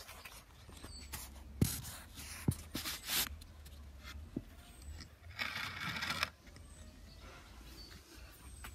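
Handling noise from a phone camera being positioned and mounted by hand: a few sharp knocks and clicks and short bursts of rustling and scraping, over a low steady rumble.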